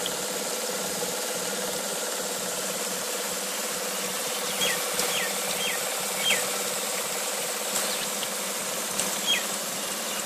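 A small generator turned by water runs with a steady buzzing hum. Several short falling chirps come in the second half.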